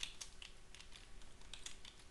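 Faint, irregular clicks of computer keyboard keys being pressed, a few scattered single taps.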